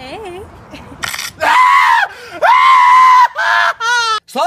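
A young man screaming, as if in pain from a neck cramp: two long, high-pitched held screams, then shorter cries near the end.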